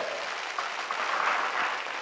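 Studio audience applauding, steady throughout.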